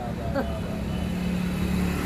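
A motor vehicle's engine running close by with a steady low hum, after a brief bit of voice near the start.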